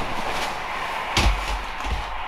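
Two people dropping onto a leather couch: rustling, with a sharp thump about a second in and a softer thump near the end.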